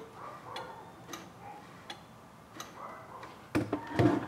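A few faint, irregular clicks from the electric hot plate's rotary thermostat control knob being turned and handled.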